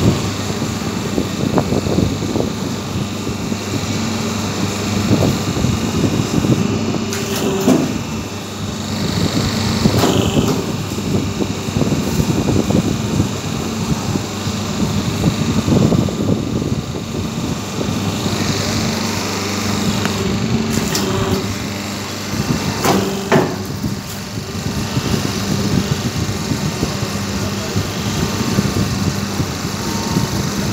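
Semi-automatic hydraulic double-die paper plate machine running with a steady hum, with a few sharp knocks and clatter of its dies and paper sheets during pressing.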